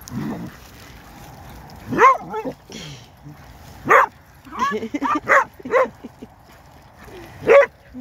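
Dogs barking in play: short, sharp barks about two seconds in and again about four seconds in, a quick run of them around five seconds, and one more near the end.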